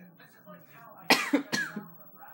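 A person coughing twice, two loud sharp coughs about half a second apart just past the middle.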